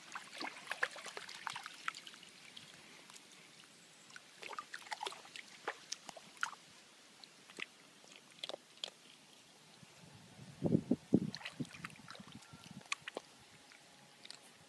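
Small dog wading in shallow creek water: scattered light splashes and drips from its paws over a faint steady trickle of the stream. A louder cluster of low knocks comes about eleven seconds in.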